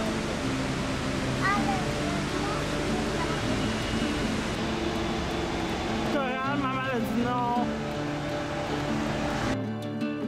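Background song with a singing voice, laid over a steady rushing noise that cuts off abruptly near the end, leaving the music alone.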